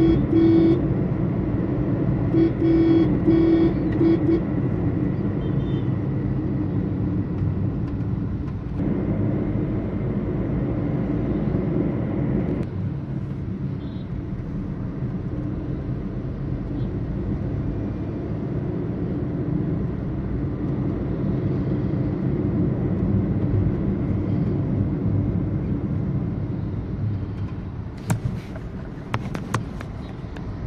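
Steady road and engine rumble heard from inside a moving car. A car horn sounds at the start, then a quick run of short honks about two to four seconds in.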